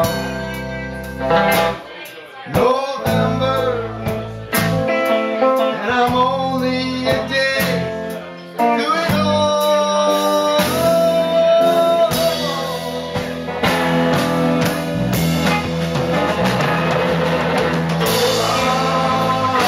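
Live band playing a song on electric guitars, bass and drum kit, with a singer at the microphone holding long notes.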